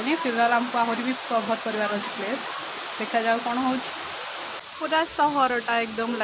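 A woman singing softly, unaccompanied, holding long drawn-out notes, over a steady rushing hiss.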